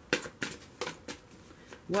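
A tarot deck being shuffled overhand by hand: a handful of quick, sharp card slaps and flicks, about five in two seconds.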